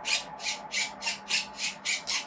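Sound effect played through the small Bluetooth speaker fitted inside a Bugatti Chiron diecast RC conversion: a rapid series of about seven short, harsh bursts, about three and a half a second.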